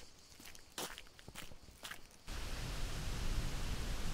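A few footsteps on a sandy quarry track. About halfway through, they give way suddenly to a steady, louder rushing noise with a deep rumble.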